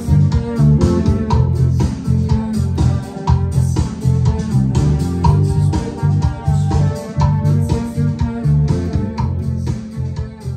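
Rock music: electric guitars and a prominent bass line over a steady beat.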